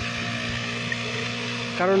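Backpack brush cutter's small engine running at a steady speed, driving a weeder head that is tilling the soil. The hum stays even throughout.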